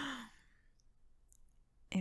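A young woman's close-miked breathy exhale, falling in pitch as it trails off the end of her laugh in the first half second. It is followed by near quiet with a couple of faint ticks, and her speaking voice returns at the very end.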